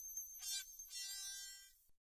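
Closing notes of a minimal 1980s electronic track: two quiet electronic tones, the second held and fading out, over a faint steady high whine, then the sound cuts off to silence just before the end.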